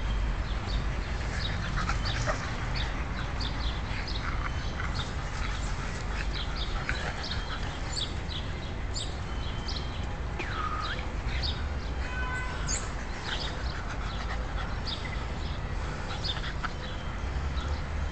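Small dogs (pugs and a Boston terrier) playing, with occasional yips and one whining cry about ten seconds in, over scattered short high chirps and a low steady rumble.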